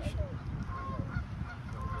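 A few short, faint goose honks over a steady low rumble.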